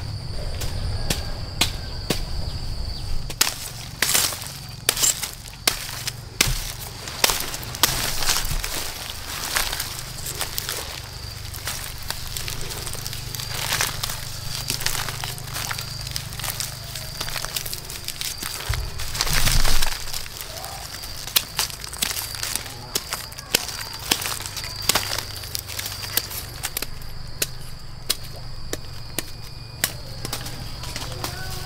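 Dry bamboo stems and straw being pulled aside and dug through by hand and with a machete: irregular crackles, snaps and scrapes of brittle stems and soil. A steady high insect trill runs underneath.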